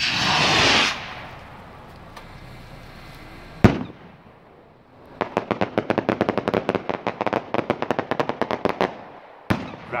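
A hand-made skyrocket launching with a loud rushing whoosh lasting about a second. About 3.7 s in comes one sharp bang as it bursts, and from about 5 s a fast crackle of popping stars runs for around four seconds.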